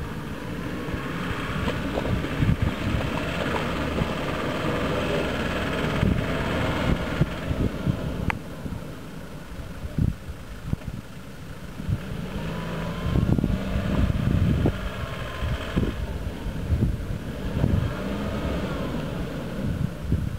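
Land Rover Defender's engine labouring through deep muddy ruts, its revs rising and falling several times.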